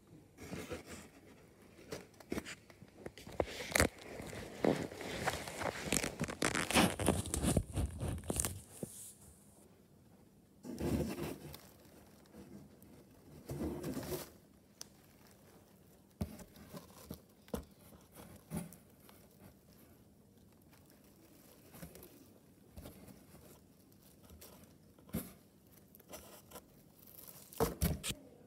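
A rabbit rummaging in and chewing dry hay: crackly rustling and crunching, dense for the first eight seconds or so, then in short bursts with scattered clicks.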